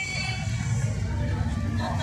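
Voices and music over a public-address loudspeaker at a street festival, with a steady low rumble underneath.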